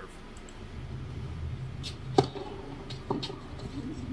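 A single sharp knock about two seconds in, the loudest sound, followed by a fainter click about a second later, over a low steady hum.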